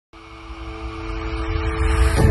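Logo intro sound effect: a low rumbling swell with a held tone over it, growing steadily louder.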